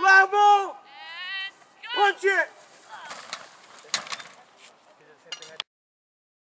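A young child calling out in several drawn-out, high-pitched cries, followed by rustling and a few sharp knocks. The sound cuts off abruptly near the end.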